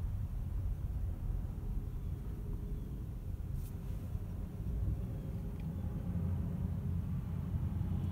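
Low, steady rumble of road and cabin noise inside an electric Tesla Model X creeping in stop-and-go traffic, with no engine sound. Near the end a deeper rumble swells as a low-flying jet airliner passes overhead.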